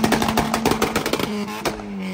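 A modified car's engine revving with a loud exhaust, with a fast run of sharp crackles and pops through most of it. Near the end the revs fall away.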